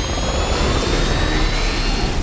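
Film sound effect of the Bat, Batman's flying vehicle: a jet-turbine whine rising slowly in pitch over a heavy, steady low rumble.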